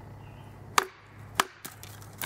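A fixed-blade knife tapped through a stick with a wooden baton in a fine-cut batoning stroke: two sharp knocks about half a second apart, then a lighter one.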